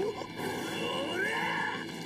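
The anime episode's soundtrack playing quietly: a faint character's voice over background sound.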